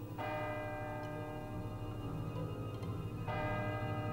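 A bell struck twice, about three seconds apart: once just after the start and again near the end, each stroke ringing on as a cluster of steady tones.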